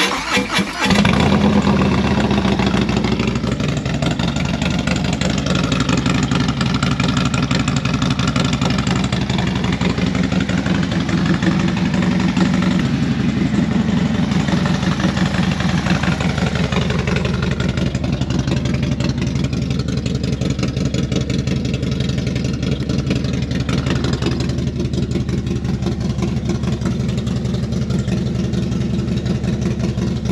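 Harley-Davidson Low Rider ST's Milwaukee-Eight 117 V-twin starts up in the first second and then idles steadily through its exhaust.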